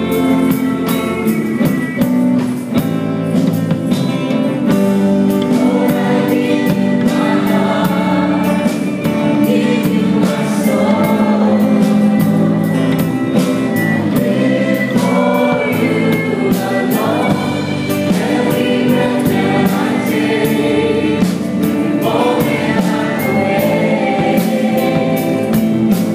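A live worship band and choir performing a song: a group of singers over strummed acoustic guitars, violin, electric and bass guitar, with drums keeping a steady beat.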